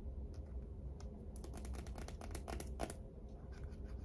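A quick run of light clicks and taps from hands handling tarot cards, lasting about a second and a half in the middle, over a faint low room hum.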